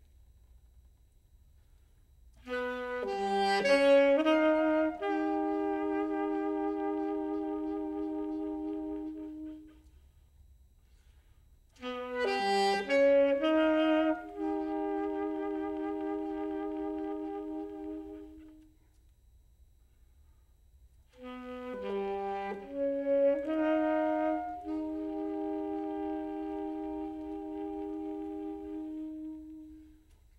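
Saxophone quartet (sopranino, alto, tenor and baritone saxophones) playing three phrases, each opening with a quick flurry of shifting notes and settling into a long held chord that then stops, with short silences between.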